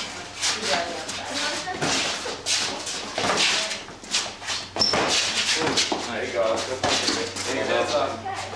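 Onlookers talking and calling out over an amateur boxing spar, with scattered short sharp knocks of padded gloves landing.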